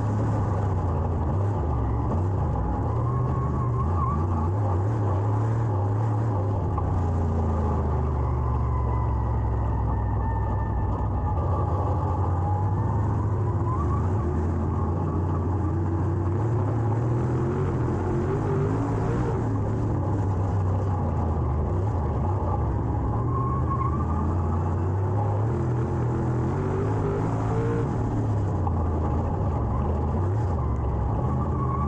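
Dirt late model race car's V8 engine, heard from inside the cockpit at racing speed. The engine note rises and falls as the car slows for the turns and picks up speed again.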